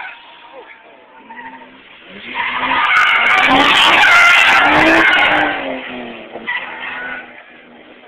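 Car tyres squealing on pavement for about three seconds, starting a little over two seconds in and fading near the end, as a car skids or drifts.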